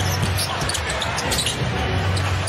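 Live game sound in a basketball arena: a steady crowd hum in the large hall, with a basketball being dribbled on the hardwood and short clicks and squeaks of play on the court.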